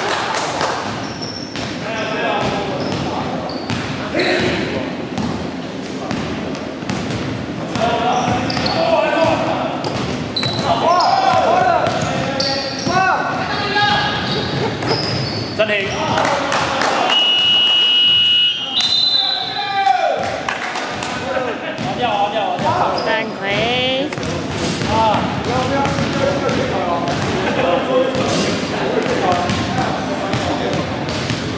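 Basketball game play on a hardwood gym floor: the ball bouncing, shoes squeaking and players' voices echoing in a large hall. A steady whistle-like tone sounds for about two seconds near the middle, with a short trilling whistle a few seconds later.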